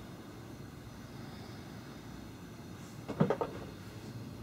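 Quiet room with a quick cluster of clicks and knocks about three seconds in, from a small old mobile phone being handled.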